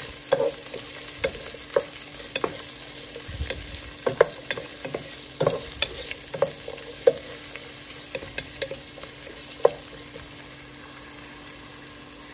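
Diced onion and garlic sizzling in hot oil in a pot while being sautéed toward browning. A wooden spoon stirs them, scraping and knocking against the pot at irregular moments.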